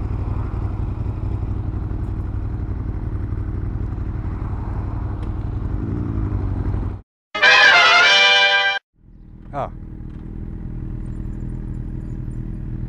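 Motorcycle engines idling steadily. About seven seconds in the sound cuts off abruptly and a loud pitched sound lasts about a second and a half. After that a quieter motorcycle engine runs on.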